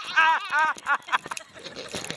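Several people whooping and cheering with raised voices for about a second, then fading to softer noise.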